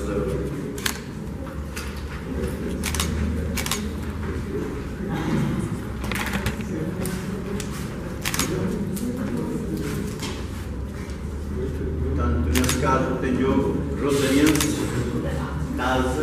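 Small plastic draw balls clicking and snapping as they are twisted open, with paper slips rustling, in a series of short irregular clicks over a steady low hum. Low voices come in near the end.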